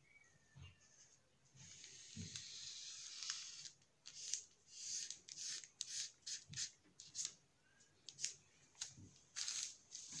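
Felt-tip marker drawn across brown pattern paper: one longer scratchy stroke lasting about two seconds, starting a second and a half in, then a run of short quick strokes.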